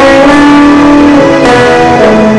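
Loud live band music with guitar and keyboard holding sustained notes.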